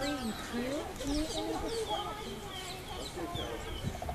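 Birds calling: a short, high, falling chirp repeated about three times a second over a mix of lower, gliding calls, with faint voices in the background.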